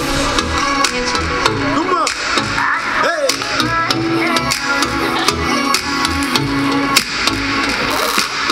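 Live pop music through outdoor PA speakers: a young female singer's voice over backing music with a steady beat.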